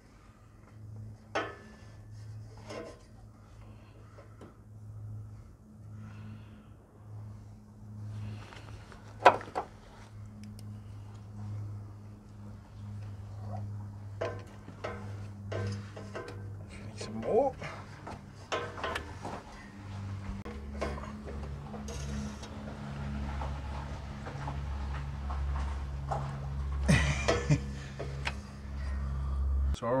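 Soft background music of held low notes that change about two-thirds of the way through. Over it come scattered light clicks and knocks, with one sharper knock about nine seconds in, as a plastic gear-oil squeeze bottle and filler tube are handled at the differential.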